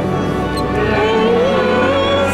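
A choir singing slow sacred music, with long held notes that rise gently about a second in, resounding in a large stone church.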